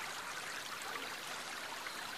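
Faint, steady babbling of a stream, a background water ambience.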